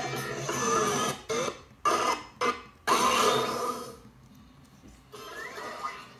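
Toon Disney logo ident jingles and sound effects playing through laptop speakers. The sound cuts in and out abruptly several times in the middle, drops low for about a second, and picks up again near the end.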